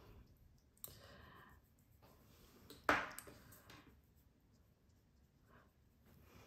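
Quiet sounds of a paintbrush working wet watercolour on paper: a soft scrubbing about a second in, then a single sharper click a little before the middle.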